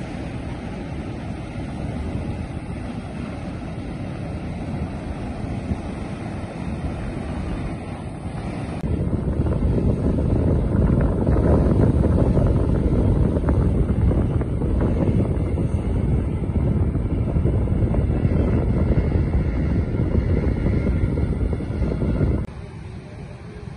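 Loud wind noise on the microphone over surf breaking on a beach. It gets louder about nine seconds in.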